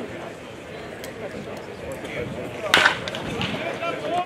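A pitched baseball smacking into the catcher's mitt once, about three seconds in, sharp and loud, with background talk throughout.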